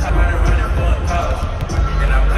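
Basketballs bouncing on a hardwood court, over loud bass-heavy music from the arena sound system.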